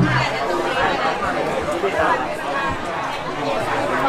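Crowd chatter: many voices talking at once, steady throughout.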